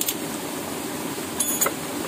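Steady rush of flowing water, with a few sharp clicks of metal parts being handled about one and a half seconds in.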